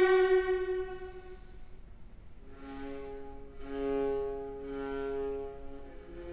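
Unaccompanied viola, bowed: a loud held note fades away over the first second or so, then after a brief hush softer held notes begin and swell around the middle before easing off.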